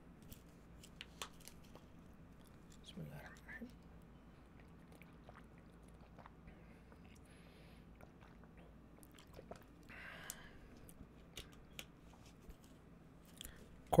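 Faint sounds of a man drinking from a plastic water bottle: small scattered clicks and crinkles of the bottle with mouth and swallowing sounds, and a short breathy rush about ten seconds in.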